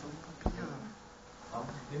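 A beetle buzzing its wings, a faint low steady hum, with a single sharp click about half a second in.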